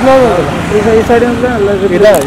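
People talking, with a low hum of street traffic behind.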